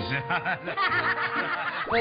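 People laughing and chuckling over light background music, with a quick rising sweep near the end.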